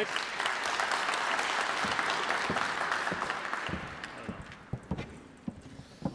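Audience applauding, dying away after about four seconds, followed by a few scattered dull knocks.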